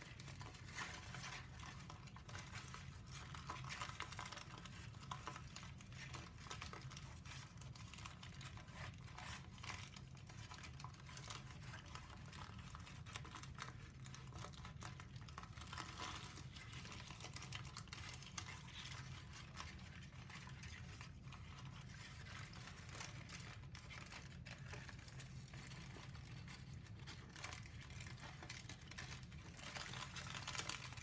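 Faint, irregular crinkling and rustling of a large sheet of brown paper being handled, folded and pressed into pleated creases. A steady low hum runs underneath.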